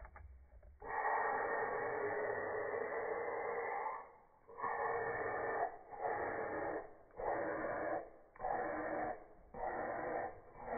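Loud breathy hissing from a person: one long rush of breath starting about a second in, then shorter ones roughly every second and a quarter.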